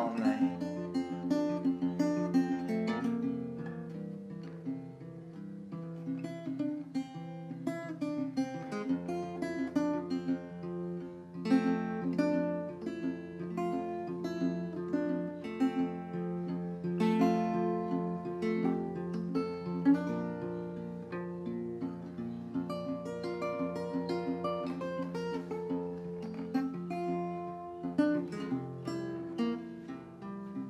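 Acoustic guitar with a capo playing an instrumental passage: picked notes ringing over held low bass notes.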